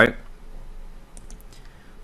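A few faint computer mouse clicks about a second in, over quiet room tone.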